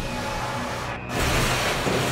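Dramatized storm-at-sea sound effects over a low music drone: about a second in, a sudden loud rush of crashing water and wind noise swells up and carries on.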